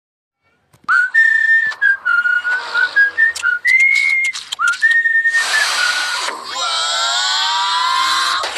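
A whistled tune of held notes sliding between pitches, starting about a second in. About five seconds in comes a burst of hiss, then a rising, drawn-out tone.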